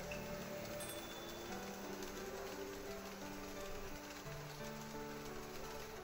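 Soft background music with long held notes, over a steady patter of N-scale model train wheels and motors running on the track.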